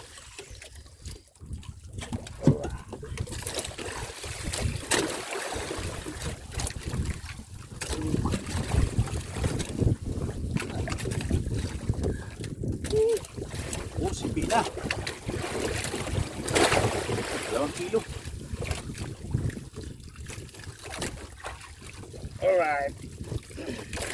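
Wind on the microphone and sea water against the hull of a small outrigger boat, with scattered sharp knocks and clicks as a fishing handline is hauled in over the side.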